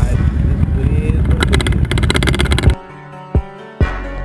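Wind rushing over the microphone and a motorcycle engine running while riding, with music underneath. About two-thirds of the way through it cuts off suddenly, leaving music with a few sharp drum hits.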